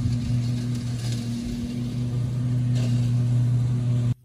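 Riding lawn mower engine running steadily while mowing, a constant low hum with a fainter higher tone above it.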